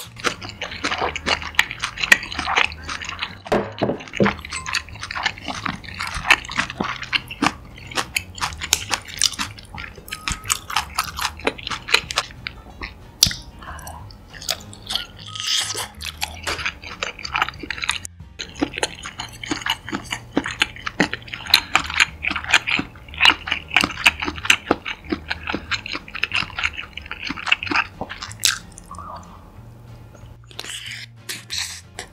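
Close-miked chewing of spicy noodles and sausage: a dense, uneven run of wet mouth clicks and smacks, several a second.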